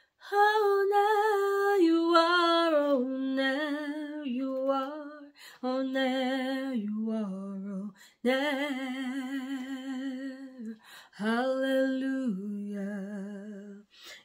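A woman singing unaccompanied, slow and prayerful, in about five phrases with short breaths between them. Each phrase steps down in pitch, with vibrato on the long held notes.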